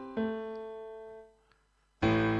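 Piano chords on a keyboard: the previous chord dies away, then a new chord is struck just after the start. It fades for about a second and is released, leaving a short silence.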